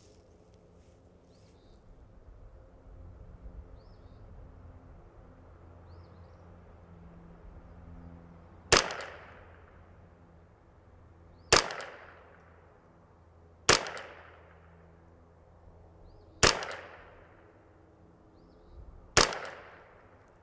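Five shots from a Kidd Supergrade 10/22 semi-automatic .22 LR rifle, fired one at a time about two to three seconds apart as a group, starting about nine seconds in, each a sharp crack with a short fading tail.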